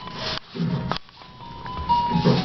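Simple electronic tune of plain held notes from a baby's activity gym toy, with a short rustle at the start and a sharp click just before a second in.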